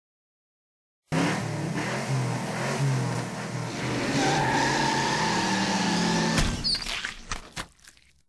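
Car engine running, with a high squeal coming in about three seconds after it starts, then a few sharp clicks as the sound fades out.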